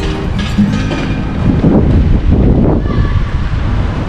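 Wind buffeting the camera microphone, a heavy low rumble that swells in the middle, with faint music underneath.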